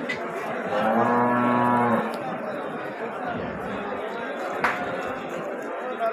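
A cow mooing once, a single steady low call lasting about a second, starting about a second in, over background voices. A brief sharp click follows later.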